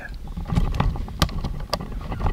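Handling noise from a handheld camera being moved and swung around: low rumbling with a few sharp clicks, the sharpest just past the middle.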